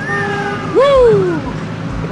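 A man's voice calling out in two drawn-out calls. The second call, about a second in, starts high and slides down in pitch.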